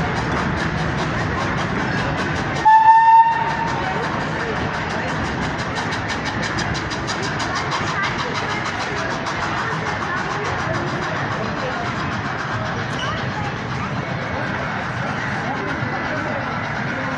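Small steam tank locomotive hauling a freight train away, with a steady rhythmic chuffing. One short whistle blast about three seconds in is the loudest sound.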